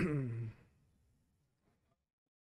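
A man's dismayed sigh, falling in pitch and lasting about half a second, then faint room tone; the sound cuts out completely at the end.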